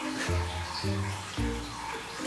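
Background music: soft held notes over a bass line, changing about every half second.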